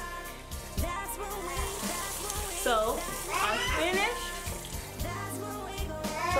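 Background rock song with a steady beat, and a high voice gliding up and down about halfway through. Underneath, a kitchen faucet runs faintly as conditioner is rinsed out of hair.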